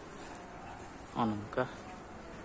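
Brief speech: a short two-syllable utterance a little over a second in, over a steady faint outdoor background hiss.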